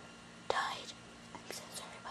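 Soft whispering from a girl, a breathy rush about half a second in and a few short hissing sounds near the middle.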